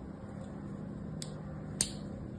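A thin blade scoring lines into a dry bar of soap: a faint scratch-click about a second in, then one sharp, crisp click near the end as the blade cuts through the surface, over a steady low hum.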